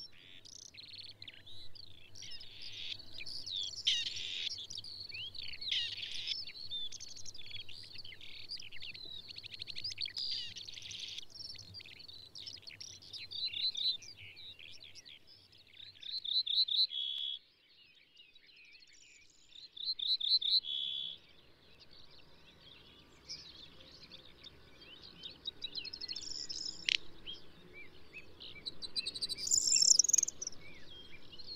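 Several birds singing and calling together, a dense run of short chirps and warbling phrases. Twice, around the middle, a short rapid trill of evenly repeated notes stands out.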